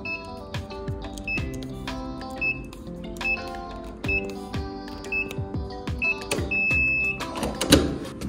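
Digital keypad door lock on a hotel room door beeping as its buttons are pressed: six short high beeps at the same pitch, then a longer beep just before the last second. Near the end comes a loud clunk as the door's lever handle is worked. Background music plays throughout.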